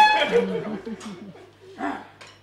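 A held saxophone note stops just after the start, followed by a quick run of short yelping vocal sounds that fade, with one louder yelp near the end.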